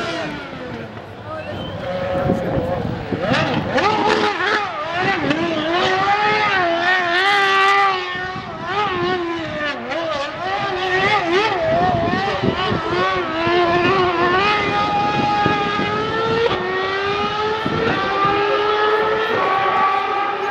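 Lotus Renault R31 Formula One car's 2.4-litre V8 doing donuts, its engine pitch wavering rapidly up and down as the throttle is worked. Near the end the pitch climbs steadily as it accelerates.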